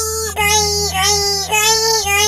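A high-pitched, childlike singing voice holds a string of about five short notes at nearly one pitch, with brief breaks between them, over a steady low hum.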